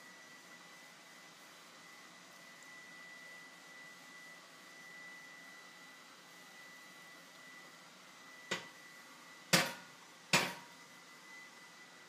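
Faint quiet stretch with a thin steady high tone, then three sharp knocks near the end, a cast iron skillet knocking against the gas stove's iron grate as it is handled and set down.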